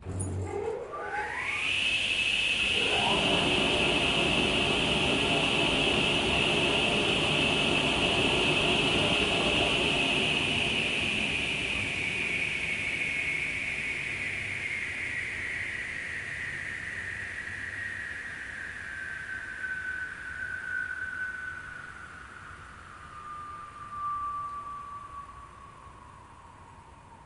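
Table saw starting up: the motor and blade whine climbs to full speed in about two seconds and runs steady. From about ten seconds in, the pitch slowly falls as the blade winds down.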